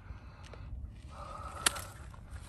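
Quiet outdoor background with a low wind rumble on the microphone, a soft breathy hiss in the second half, and one sharp click just before the end.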